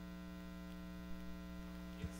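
Steady electrical mains hum, a constant low buzz with no other sound over it.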